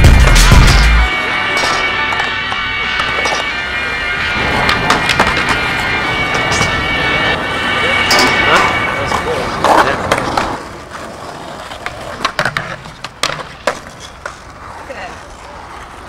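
Skateboard wheels rolling on concrete, with the sharp clacks of the board popping and landing. A hip-hop track with heavy bass cuts off about a second in, and the rolling and clacks turn quieter over the last third.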